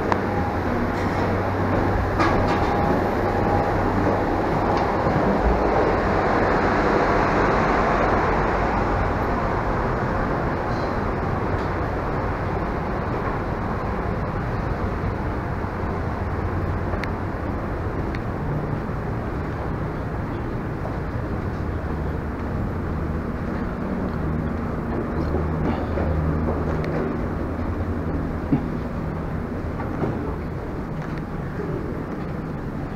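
Steady mechanical drone and rushing noise of an airport gate, made up of a low hum and a broad rush, swelling a little a few seconds in and then easing.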